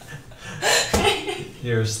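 Laughter, a short breathy burst about half a second in, followed near the end by a woman starting to speak.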